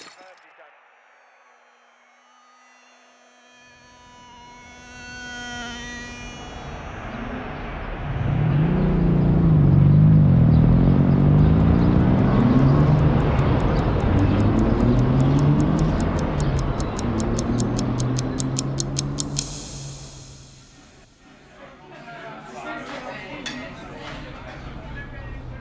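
Layered sound design for an animation. A sharp hit opens it, followed by ringing tones. Then a low rumble with wavering pitch swells to its loudest, carrying fast regular ticking on top, and cuts off suddenly; fainter sounds follow.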